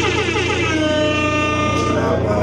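A hip-hop backing beat starts suddenly through the PA speakers with an air-horn sound effect, its stacked tones sliding downward over a steady deep bass.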